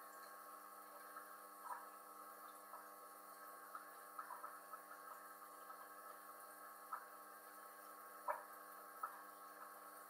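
Faint, steady electrical hum of an aquarium's internal power filter running, with a few short irregular blips over it, the loudest about eight seconds in.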